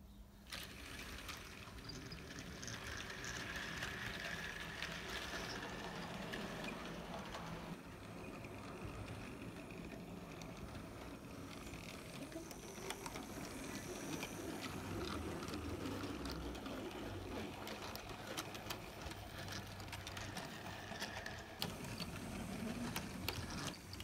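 Model railway trains running: small electric locomotive motors whirring steadily, with wheels clicking over rail joints and points.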